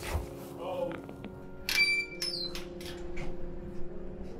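Low sustained background-score notes, with a brief high-pitched vocal sound about two seconds in.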